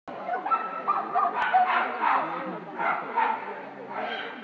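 A dog barking several times over people talking.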